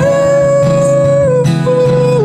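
Acoustic guitar strumming under a male voice holding one long sung note, which steps down to a lower held note about a second and a half in.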